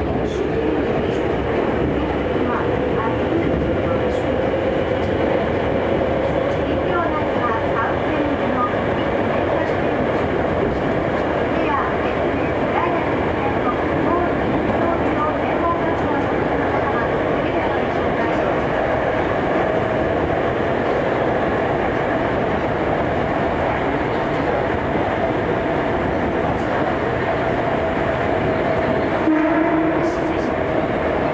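Hankyu 7300 series electric train running through a subway tunnel, heard from inside the passenger car: a loud, steady rumble of wheels and running gear. A whine within it climbs slowly in pitch for about twenty seconds, then holds steady.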